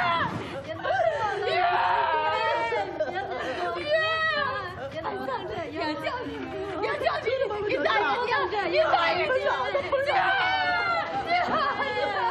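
Women's voices crying out over one another in distress, one repeatedly calling a girl's name in a high, wavering, tearful voice.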